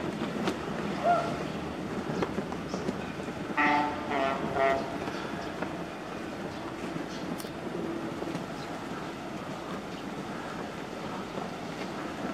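Steady outdoor background noise. About four seconds in, a horn sounds three short beeps in quick succession.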